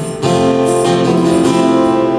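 Live band music led by a strummed acoustic guitar playing sustained chords, with no singing.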